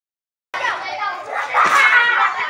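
Crowd of children chattering and calling out with many overlapping voices, starting about half a second in and growing louder near the end.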